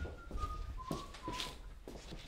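A person whistling a few clear notes that step down in pitch, over soft knocks from footsteps.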